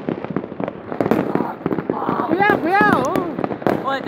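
Many firecrackers popping in quick, irregular succession, with people's voices rising over them about two seconds in.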